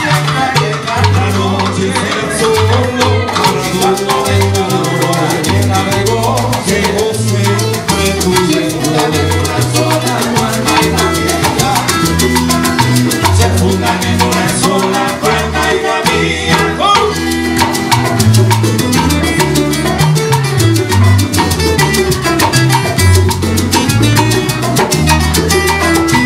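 Live Cuban band playing a salsa-style song: nylon-string acoustic guitar, maracas and congas over a steady bass line, with male voices singing.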